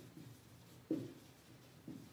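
Marker pen writing on a whiteboard, faint strokes with a sharper one about a second in and a short one near the end.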